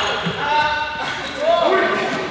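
Several young people's voices calling out during a ball game in an echoing sports hall, with a ball bouncing on the hall floor.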